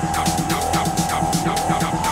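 Electronic dance music from a DJ mix: a steady, pulsing beat under a long held synth tone, with faint rising synth lines.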